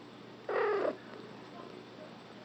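Domestic cat giving one brief call, about half a second long, as it is stroked awake.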